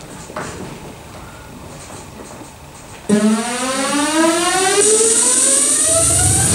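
About three seconds in, a loud synthesized riser starts suddenly and climbs steadily in pitch, opening an electronic dance track played back over the sound system. Before it there is only quiet hall noise.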